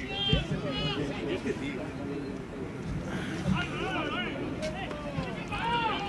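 Footballers shouting to each other on the pitch: several short, high-pitched calls, fainter than close speech, over a steady outdoor background.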